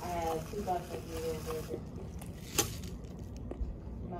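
A person speaking briefly, then a single sharp click about two and a half seconds in, over low background room noise.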